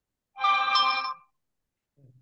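A short electronic chime like a phone alert tone, lasting about a second, with a higher note coming in halfway through.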